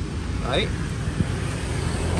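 A steady low background rumble with a low hum, with one short spoken word about half a second in.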